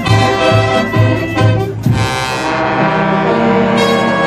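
Brass band of trumpets, trombones, saxophones, clarinets and sousaphones playing live: a rhythmic passage over a pulsing bass beat gives way about halfway to a long held chord.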